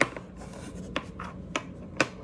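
Hand handling noise as a small battery-strap holder is fitted into the bottom of a hard plastic case: a few light clicks with soft rubbing and scraping between them.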